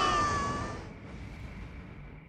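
A high-pitched, wavering cartoon scream trails off and fades away within the first second, leaving only a faint low rumble.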